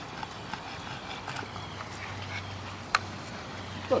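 Faint footsteps on brick pavers, light scattered ticks over a faint low hum, with one sharp click about three seconds in.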